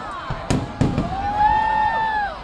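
Aerial fireworks bursting overhead: two sharp bangs about half a second apart, then a long held tone that swells and fades out.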